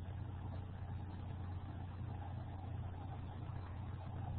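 A steady low hum with a faint, even hiss under it, unchanging throughout: background noise in a pause between speech.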